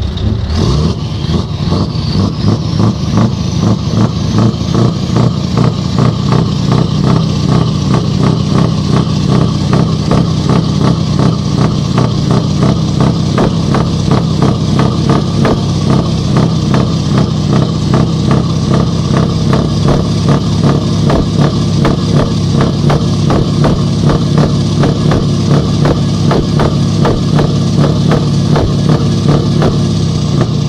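Truck's diesel engine revved up just after the start and held at high revs with a fast, even throb, dropping back near the end.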